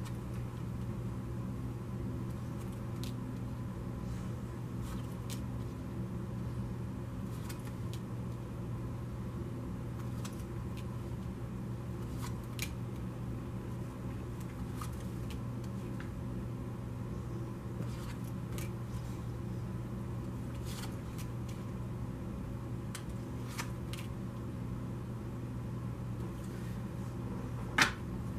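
Tarot cards being dealt from a deck and laid one by one onto a wooden table, each landing with a soft tap, scattered every few seconds, with one sharper knock near the end. A steady low hum runs underneath.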